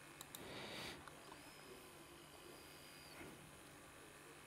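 Near silence: room tone, with a faint short hiss in the first second and a few faint clicks near the start.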